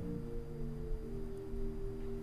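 Soft background music of held chords, with the chord changing about a second in.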